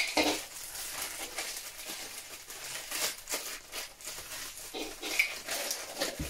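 Thin plastic bags crinkling and rustling in the hands as vinyl figures are unwrapped from their packaging, in irregular crackles with a louder crackle at the start.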